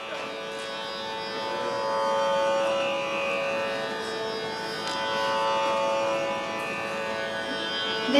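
Tanpura drone sounding steadily, a bed of sustained pitches that swells and fades gently, with no voice over it.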